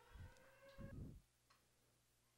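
Near silence, with only faint traces of sound in the first second.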